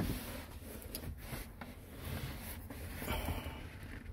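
Quiet car-cabin room tone with faint rustling and a few light knocks of hands and camera being moved around the rear seat.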